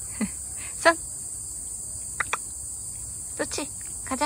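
Steady, high-pitched drone of insects singing outdoors, with several short voice-like sounds breaking in.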